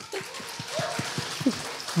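Audience applauding, with a laugh near the end.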